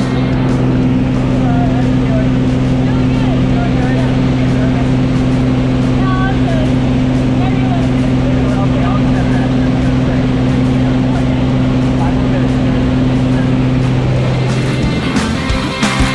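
A small high-wing plane's engine and propeller drone steadily, heard inside the cabin, with faint voices under it. Rock music comes in near the end.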